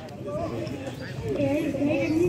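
Children's voices speaking, faint at first and growing louder toward the end.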